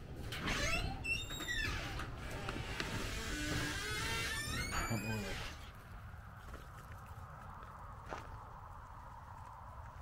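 A door squeaking and knocking as it is opened and passed through, with several squeals sliding up and down in pitch during the first half. Then faint, steady outdoor air with a couple of soft taps.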